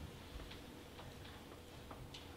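Quiet room tone with a few faint, irregular ticks.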